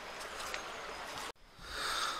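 Steady outdoor background hiss with a few faint ticks, which cuts out abruptly about a second and a half in and then fades back up.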